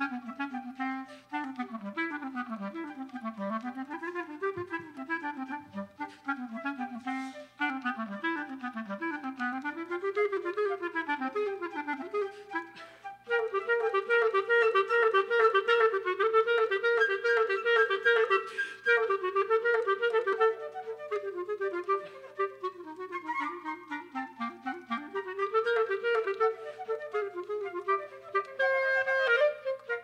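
A flute and clarinet duo playing a classical piece. The clarinet carries rolling, arpeggio-like figures low in its range, then about thirteen seconds in moves suddenly higher and louder, with the flute playing alongside.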